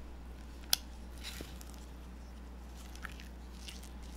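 Rubber spatula folding thick cake batter in a glass bowl: soft scraping and squishing, with a sharp tap against the bowl under a second in and a smaller one near the end, over a steady low hum.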